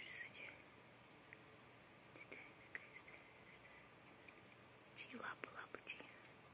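Near silence with a few faint small clicks, and a soft murmured voice about five seconds in.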